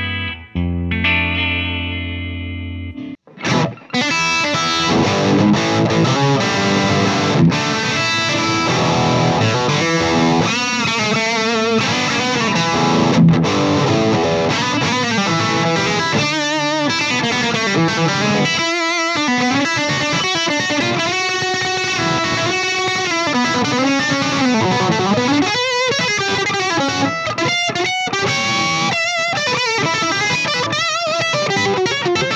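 Gibson Custom Shop Limited Edition SG Custom electric guitar played through an amp: a held chord rings and fades, then after a brief break about three seconds in, continuous lead playing with string bends.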